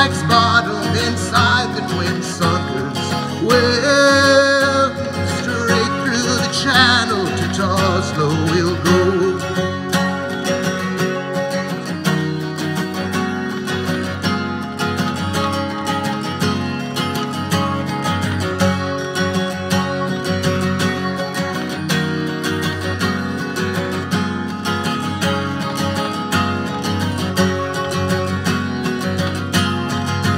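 Steel-string acoustic guitar strummed in a steady folk rhythm as an instrumental break. A man's singing voice carries over the strumming for roughly the first eight seconds, then stops.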